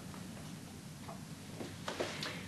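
Quiet room tone in a pause between speech, with a few faint clicks in the second half.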